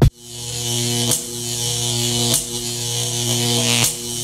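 Synthesized electronic buzz with a bright hiss over it, a glitch sound effect in an intro music track. It holds steady and breaks off briefly about every second and a half.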